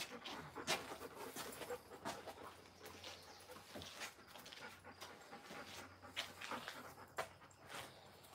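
Alaskan Malamute puppy panting close by, in short breathy puffs at irregular intervals.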